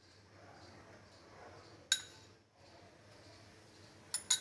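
A steel spoon clinks once against a dish about two seconds in, with faint room noise around it.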